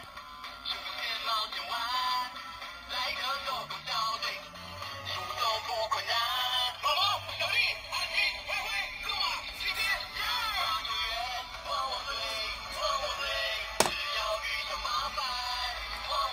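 Paw Patrol toy wrist watch playing a song with singing through its small built-in speaker, thin-sounding with no bass. A single sharp click near the end.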